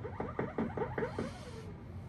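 Moog Moogerfooger analog effects modules putting out a fast train of short electronic chirps, about five a second, as the knobs are turned. The last chirp slides down in pitch and fades out about three-quarters of the way through.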